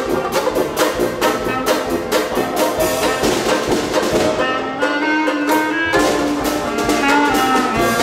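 Traditional jazz band playing live in full ensemble: trumpet, clarinet and trombone over tuba, banjo, piano and drums keeping a steady beat. About halfway the beat drops out for a couple of seconds while the horns hold long notes, then it comes back in.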